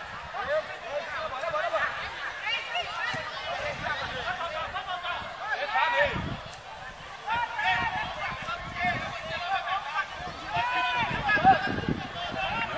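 Several people talking and calling out at once near the microphone, overlapping voices of onlookers at a football match, with a short louder shout near the end.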